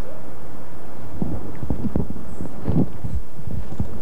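Soft, irregular low thumps and knocks starting about a second in, over a steady background noise.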